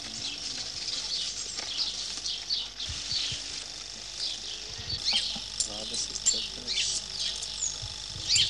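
Small birds chirping, many short high calls in quick succession, outdoors among trees.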